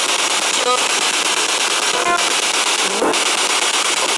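Loud, steady radio static from a handheld radio, played through a small cube speaker, broken by short snatches of sound about three-quarters of a second, two seconds and three seconds in, as on a ghost-hunting spirit box sweeping the dial.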